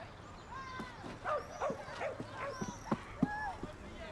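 Animal calls: a quick run of short, high calls, about three a second, each rising and falling in pitch, with soft knocks underneath.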